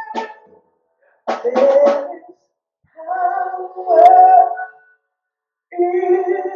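A woman singing solo into a microphone in short held phrases, each about a second long, with silent gaps between them.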